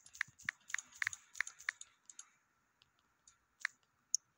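Key-press clicks of a smartphone's on-screen keyboard as a short message is typed: a quick run of taps, about three a second, for the first two seconds, then a few scattered clicks.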